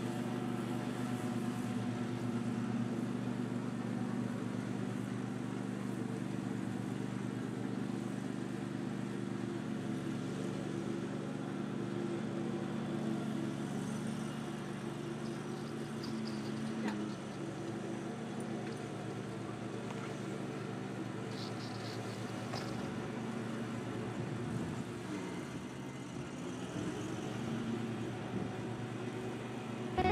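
Riding lawn mower's engine running steadily as the mower travels across a field, its hum shifting slightly in pitch and easing a little about halfway through.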